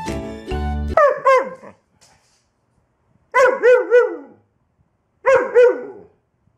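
Background music that stops about a second in, then a dog barking in three short bursts of two to four barks each, with quiet gaps between them.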